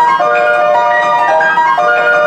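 Grand piano being played, a quick succession of notes in the middle and upper range.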